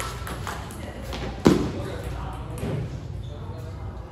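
The end of a table tennis rally: a few light ball clicks, then a single loud dull thud about a second and a half in, over background voices in a large hall.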